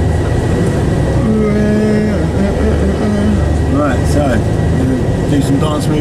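Steady low rumble of a coach's engine and tyres, heard from inside the passenger cabin while the coach drives along.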